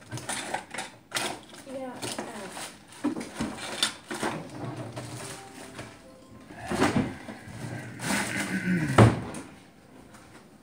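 Kitchen clatter: a series of knocks and bumps from doors, containers and objects handled at a counter close to the microphone, the loudest bump near the end, with indistinct voices.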